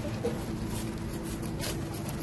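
A large knife chopping into the head of a big tuna on a wooden block: a couple of faint knocks over a steady low hum.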